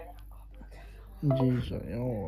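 Speech only: a quiet moment, then a person's voice starts talking about a second in.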